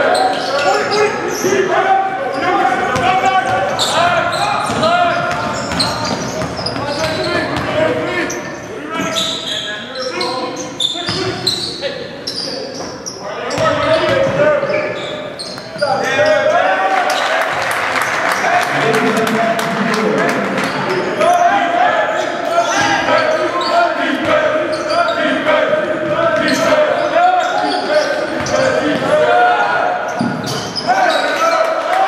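Live basketball game sound in a gym: the ball bouncing on the hardwood court among players' and benches' untranscribed shouts, all echoing in the large hall.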